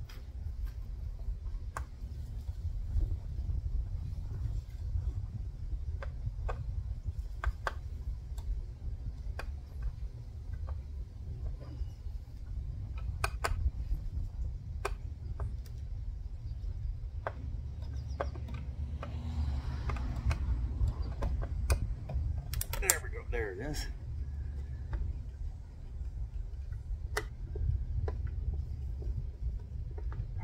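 Irregular light clicks of a long Phillips screwdriver working loose the machine screws that hold the head on a Minn Kota Terrova trolling motor, over a steady low rumble.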